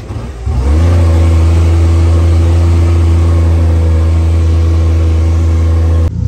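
Dune buggy engine running hard across the sand: its note climbs briefly near the start, then holds at one loud, steady pitch over a rushing hiss.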